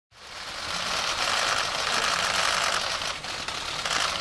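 Many camera shutters clicking rapidly and overlapping from a pack of press photographers, a dense continuous clatter that fades in over the first second.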